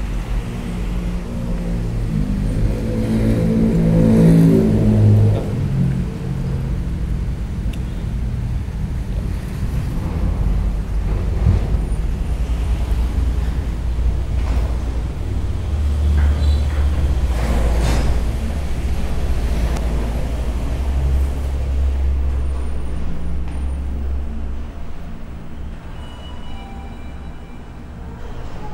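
Low rumble of road traffic, with one vehicle engine growing louder a few seconds in before fading into the general rumble.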